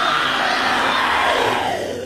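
Loud, distorted heavy metal music with shouting voices. It fades out near the end as the track finishes.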